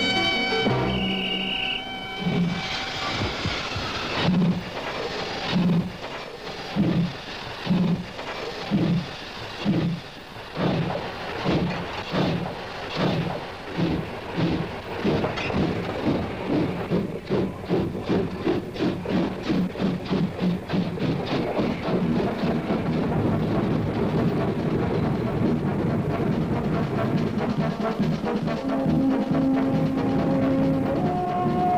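Steam locomotive of the German Class 01 pulling away after brake release: exhaust chuffs begin about a second apart and quicken steadily to several a second, until they blur into a continuous rush. Music plays along with it.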